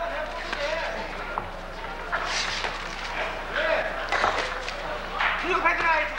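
Boxing broadcast commentary: a man's voice talking in short phrases over a steady arena crowd noise, with a low steady hum running under it.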